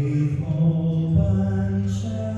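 A large mixed choir singing held chords, the low voices moving down to a lower note about a second in.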